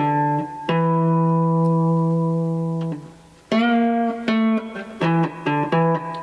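Fretless three-string cigar box guitar in G-D-G tuning, played with a slide, picking a slow blues lick. One note rings out for about two seconds, then after a short pause comes a run of shorter notes.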